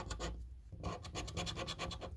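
A coin scratching the latex coating off a Cash Bolt scratch card in quick, rapid strokes. There is a short pause about half a second in.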